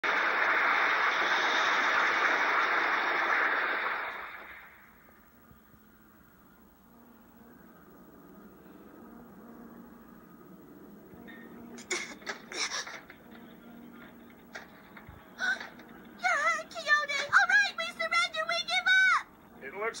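Animated explosion sound effect: a loud, steady roar that fades away over about four seconds, played through a tablet speaker and picked up by a microphone. After a quiet stretch, a few short bursts of noise follow, and a character's voice calls out near the end.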